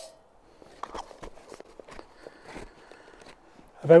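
Faint, irregular knocks and rustles from someone moving about and handling camp cooking gear, with a spoken word at the very end.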